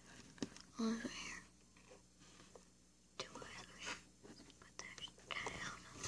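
A child whispering softly while placing a small snowman figurine by hand, with a few faint clicks and taps as it is set down.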